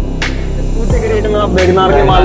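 Background music with a steady beat over a deep bass hum.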